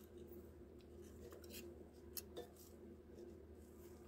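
Near silence: faint steady room hum with a few soft, brief clicks.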